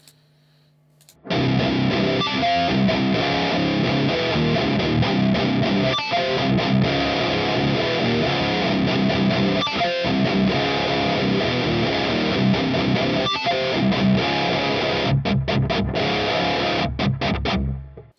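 High-gain distorted electric guitar tuned to drop C, played through a Revv Generator 120 amp capture and a simulated Mega 4x12 Blackback cabinet. The cabinet is miked with a 57 and a 121 summed back in phase. Faint amp hum comes first, and the riff starts about a second in. Near the end it breaks into short stop-start chugs before stopping.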